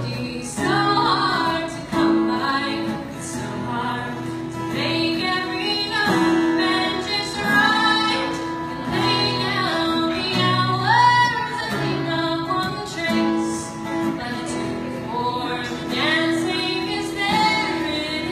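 A woman singing live in a steady melodic line, accompanied by two acoustic guitars.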